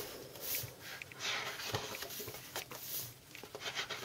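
Pages of a paperback colouring book being turned and handled: faint paper swishes and rustles with a few soft ticks.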